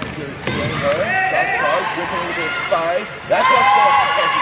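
Live indoor basketball play: sneakers squeak sharply on the hardwood court, the ball bounces, and players and the bench shout. The shouting and squeaks grow loudest near the end.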